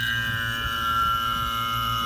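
Electric A/C vacuum pump running with a steady hum and a quick, even pulse. Right at the start a higher whine comes in and slides slightly down in pitch, as the pump begins pulling on the AC system through the opened manifold valve.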